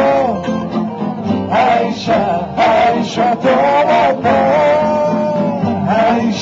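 A tamburica orchestra playing live: plucked tamburicas and a double bass with male singing, a long note held through the middle.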